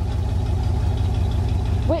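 Pickup truck engine idling: a steady low rumble with a fast, even pulse.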